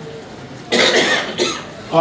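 A man coughs once, close to the microphone, about a second in.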